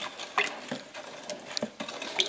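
A hand stirring thick iron clay slip in a bucket: irregular wet slaps and small clicks as the slip is churned up.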